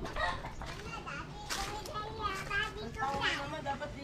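Children's voices in the background, indistinct high-pitched calling and chatter as they play.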